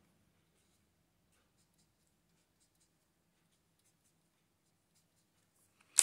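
Faint scratching and light tapping of a felt-tip marker drawing short strokes on paper, with a sharp click at the very end.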